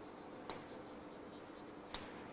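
Chalk writing on a blackboard, faint scratching with two light taps of the chalk about a second and a half apart.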